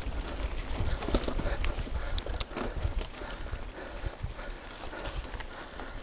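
Mountain bike rolling over a rough dirt singletrack, heard from the handlebar: irregular clicks and knocks of the chain and frame rattling over bumps, over the steady rush of tyres on dirt and brushing vegetation.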